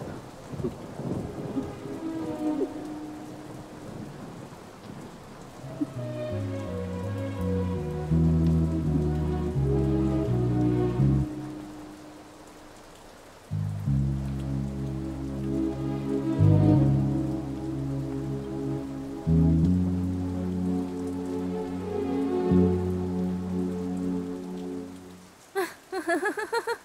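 Film soundtrack of rain with thunder. About six seconds in, a slow background score of long held chords over a bass enters. It changes chord every few seconds and drops out briefly near the middle.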